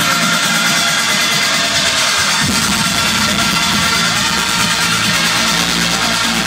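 Loud electronic dance music from a DJ's set played over a festival sound system, recorded from within the crowd. The deep bass is thin for the first couple of seconds and comes back around the middle.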